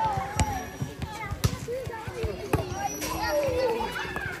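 Several sharp smacks of a volleyball being hit during play, roughly a second apart, over the chatter and calls of players and onlookers.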